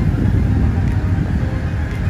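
Loud, steady low rumble of nearby road traffic.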